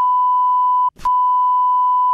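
A steady, single-pitched censor bleep masking swearing in the middle of a rant. It is broken for an instant about a second in by a short clipped sound.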